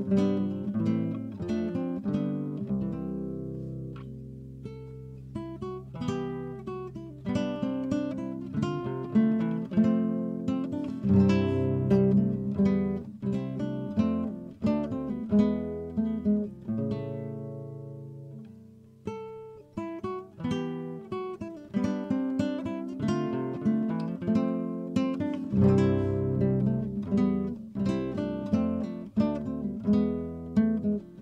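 Background music played on acoustic guitar: plucked notes and strummed chords, thinning twice to a few held notes before picking up again.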